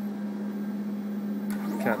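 Steady low electrical hum, unchanging while the machine's head rests on the sample.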